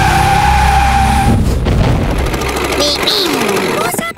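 Cartoon racing-car sound effects: a long tyre screech over engine rumble as the car skids off a bend, with the rumble stopping about three seconds in as it ends up stuck in mud.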